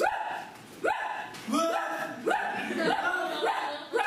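A person imitating a dog, giving a string of short barks and yips, about two a second.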